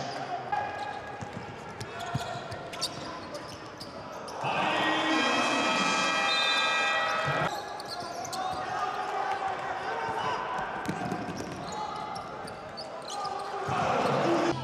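Live arena sound from a basketball game: a ball bouncing on the hardwood court amid voices of players and crowd echoing in a large hall. In the middle comes a louder stretch of a few seconds with held tones over the crowd.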